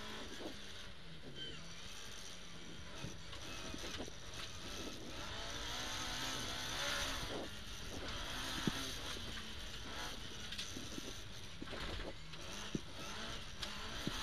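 Ford Escort RS2000 rally car's four-cylinder engine heard from inside the cabin at speed on a gravel stage, its revs rising and falling with gear changes. A heavy hiss of tyres on loose gravel swells about halfway through, and a few sharp knocks are heard near the end.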